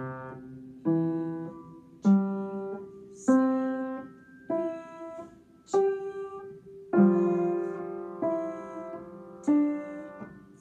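Upright piano played with both hands: single notes and chords struck at an even, slow pace about every second and a quarter, eight in all, each ringing and fading before the next.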